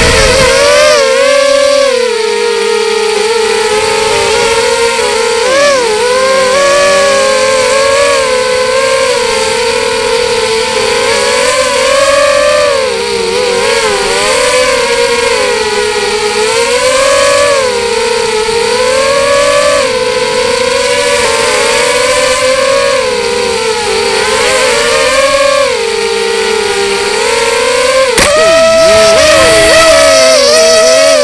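X-bird 250 FPV racing quadcopter's brushless motors and propellers whining, the pitch rising and falling continuously with the throttle, as picked up by its onboard camera. A sharp knock near the end.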